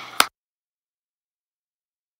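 One sharp click just after the start, then the sound cuts off to complete silence.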